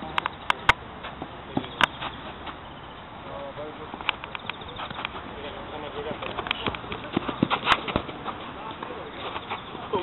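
Five-a-side football being played on artificial turf: scattered sharp knocks of the ball being kicked, with faint shouts from the players over a steady outdoor background noise.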